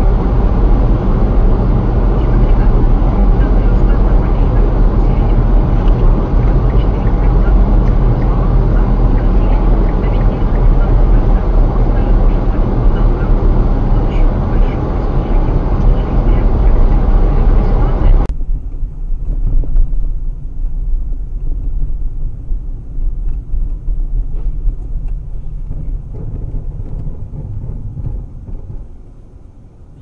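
Loud, steady vehicle rumble from a car on the road, which cuts off suddenly about eighteen seconds in and gives way to a much quieter, lower rumble that fades near the end.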